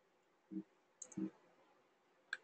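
Faint clicks of a computer mouse: one about half a second in, then a quick cluster of clicks about a second in.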